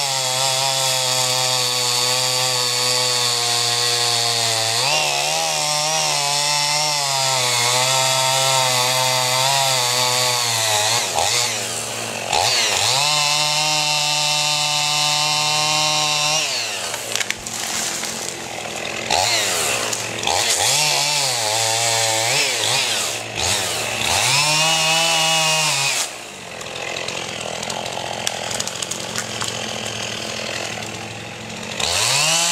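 Gas chainsaw running hard through wood, its engine pitch falling and climbing again between cuts several times, then dropping back to a lower, quieter run near the end.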